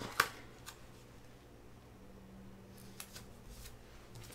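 Paper sticker sheet being handled and laid on a planner page: a few short, sharp paper snaps and taps, the loudest just after the start and a small cluster near the end.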